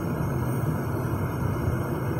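Steady engine and tyre noise heard inside the cabin of a car driving along a paved road, a low even hum with no sudden events.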